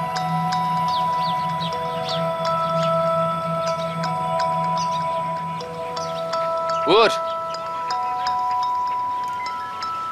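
Background music score of long, overlapping held notes with chime-like tones. One short rising call, like a brief voice, sounds about seven seconds in.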